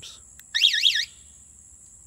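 Kawasaki Voyager 1700 motorcycle security alarm arming. It gives a short warbling electronic chirp of several fast rising-and-falling sweeps, about half a second long, starting about half a second in.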